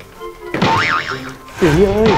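Playful edited-in background music with cartoon 'boing' sound effects: a wobbling tone that swoops up and down, about half a second in and again at the end. A voice calls out near the end.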